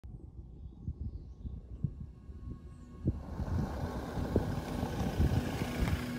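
Low, gusty rumbling noise with scattered thumps. About halfway in it swells into a louder, brighter rush that keeps building.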